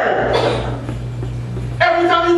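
A man's preaching voice trails off, leaving about a second of steady low electrical hum from the sound system under room noise, before a voice starts again near the end.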